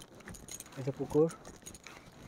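A brief man's voice sound, rising in pitch, about a second in, over faint scattered clicks and light jingling.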